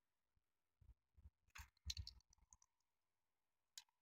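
Small plastic clicks and taps as an N gauge model train car is handled and pried apart by hand: a quick cluster for about two seconds, then a single click near the end.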